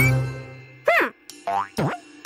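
Children's cartoon background music with three springy cartoon sound effects that glide in pitch: a rising boing at the start, a rise-and-fall about a second in, and a swoop down and back up near the end.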